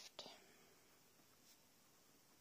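Near silence: quiet room tone, with the soft tail of a spoken word or breath in the first moment.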